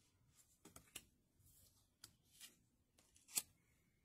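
Lenormand cards being handled: a few soft clicks and swishes as cards are slid off the deck and set down on fabric. The loudest click comes about three and a half seconds in.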